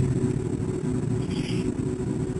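Steady low background rumble with a faint hum between spoken passages.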